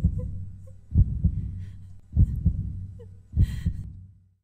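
Heartbeat sound effect: a deep double thump, lub-dub, repeating about every 1.2 seconds over a low hum, three full beats in all.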